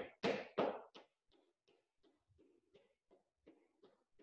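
Faint, rhythmic soft thuds of light hops in place on a rubber gym floor during air jump rope, about three a second.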